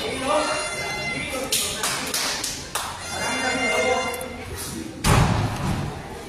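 Voices calling out in a large hall, with a few sharp smacks in the first half. About five seconds in comes a heavy thud, the loudest sound: a wrestler's body landing on the wrestling ring's canvas.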